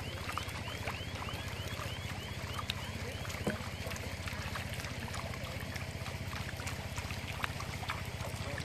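A small engine running steadily with an even low throb, likely a pond pump or a small boat motor. Over it come a quick run of short high chirps in the first second or so and a few sharp clicks and splashes.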